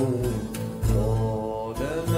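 Arabic song: a male voice holds a long, wavering sung note, bending near the end, over low, evenly spaced bass beats.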